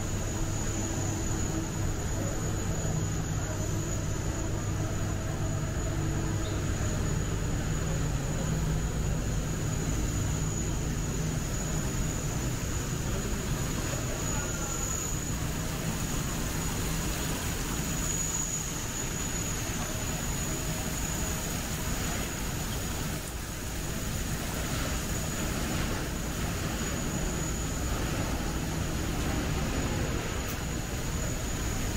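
Steady indoor airport-terminal ambience: an even hiss over a low hum, with a faint thin high whine running through it.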